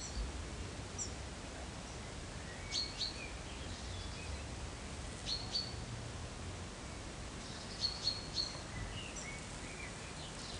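A small bird chirping in the background: short high chirps in little clusters every two to three seconds, the loudest group near the end, over a steady outdoor hiss and low rumble.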